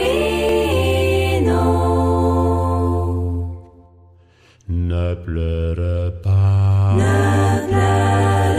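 Vocal group singing wordless close harmony in a swing-jazz arrangement, with a steady low note beneath. A held chord breaks off into a short pause a little past halfway, then shorter notes lead into another held chord.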